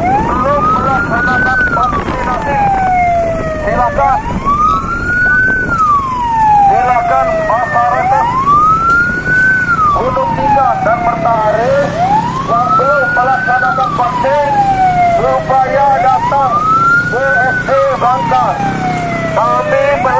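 Police wail siren, its pitch rising and then falling slowly in a cycle that repeats about every four seconds, over the low rumble of a moving motorcycle.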